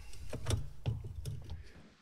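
A few light clicks and knocks of hands handling parts, over a low rumble, fading out near the end.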